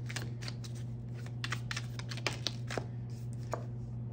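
A deck of round oracle cards being shuffled by hand: a run of quick, irregular clicks and flicks as the cards slide against each other. A steady low hum runs underneath.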